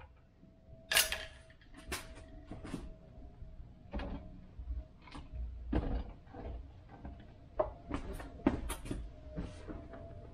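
Irregular light clicks and knocks, about a dozen, of hands moving and handling things inside a car's cabin while searching for a dropped plastic door-panel clip. A faint steady tone runs underneath.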